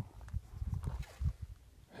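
Wind buffeting a phone microphone: a low, uneven rumble with soft knocks that dies away in the second half.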